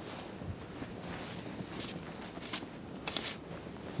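Faint scuffs and crunches of snow being wiped off a car by a mittened hand and trodden underfoot: a few short soft strokes, the clearest just after three seconds in.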